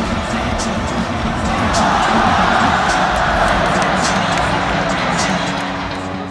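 Baseball stadium crowd cheering over music. The crowd noise swells to a peak about two seconds in, then eases.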